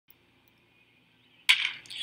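Crack of a wooden baseball bat meeting the pitch about one and a half seconds in: a single sharp hit of solid contact.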